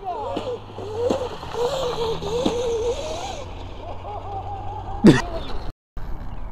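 Electric motor whine of a Sur Ron-powered 72-volt go-kart, rising and falling in pitch as the throttle is worked around a parking lot. A brief loud yell near the end.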